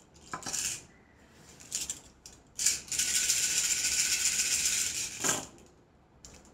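A handful of cowrie shells shaken between cupped hands. First come a few short rattles, then a steady rattle of about two and a half seconds. It ends about five seconds in as the shells are cast onto a cloth-covered table for a divination reading.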